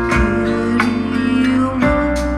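Live ballad accompaniment led by guitar, with chords struck near the start, about a second in and again near the end, and no singing.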